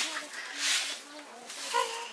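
Soft, quiet adult murmuring and a breathy hiss close to a baby, then a short infant coo near the end.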